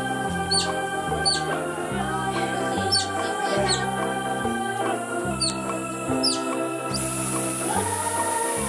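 Background music: sustained notes over a bass line that steps every half-second or so, with quick high chirps sliding downward scattered through it.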